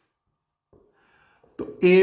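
Marker pen drawing on a whiteboard: a few faint scratchy strokes about a second in, after a short near-silent stretch. A man's voice starts near the end.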